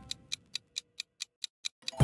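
Quiz countdown-timer sound effect: a clock-like tick repeating evenly about four to five times a second, with no music under it.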